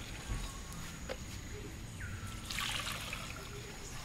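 Fresh milk being poured from a plastic jerrycan into a container, a liquid trickle that swells twice, near the start and again in the second half.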